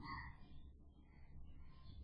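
Faint, scattered squeaks of a marker writing on a whiteboard, over a low steady hum.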